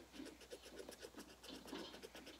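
Faint scratching of coloring strokes on a white shoe, short and irregular.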